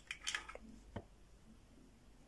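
A few faint clicks and light scraping in the first second as a model diorama's base is gripped and shifted on a tabletop by hand, with a last click about a second in, then only quiet room noise.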